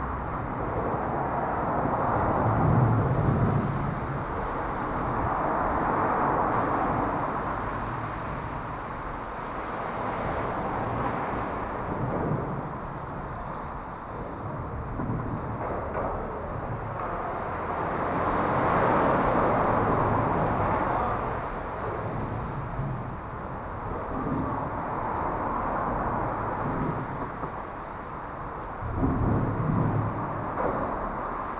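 Road traffic passing on the elevated road overhead: a steady rushing hiss that swells and fades as vehicles go by every few seconds, with a few low thuds close to the microphone.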